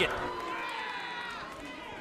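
Arena crowd reacting to a suplex: a drawn-out shout stands out over the crowd noise, and it all fades away.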